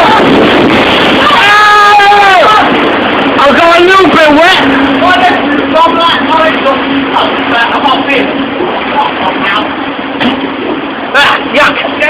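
Log flume boat running through water, a loud, steady rush of noise throughout. A long held note sounds about two seconds in, brief voices come around four seconds in, and a steady low hum runs through the middle.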